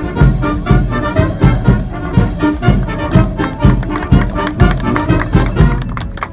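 Brass band music with a steady, march-like beat of about two strong pulses a second.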